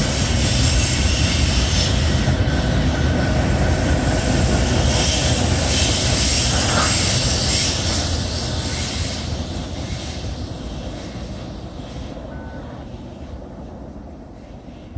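Freight train cars rolling past on the rails with a steady rumble and rattle of wheels, which fades over the last several seconds as the end of the train goes by.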